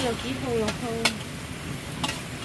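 Metal spatula stirring sliced cabbage in a blackened cooking pot over a wood fire, clinking sharply against the pot three times in the first second or so, over a low sizzle of the frying cabbage.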